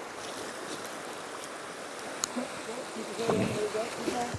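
Steady rushing of a shallow, fast-flowing river running over gravel. Near the end, a hooked steelhead splashes at the surface, with a faint voice.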